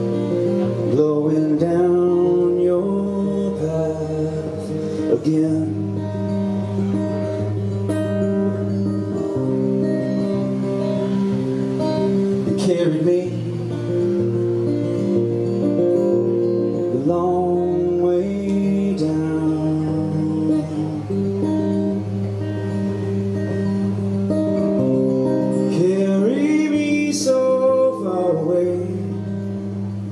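Acoustic guitar played live: a slow chord progression of held, ringing chords that change every second or two.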